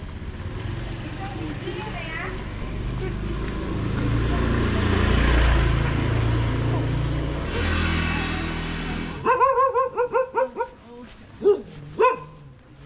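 A vehicle engine runs close by, growing louder to a peak about five seconds in, then cuts off abruptly. A dog then barks in a rapid run of high yaps, with a few more barks near the end.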